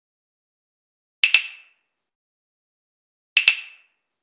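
Intro sound effect: a sharp double click with a short ringing tail, heard twice about two seconds apart, with silence between.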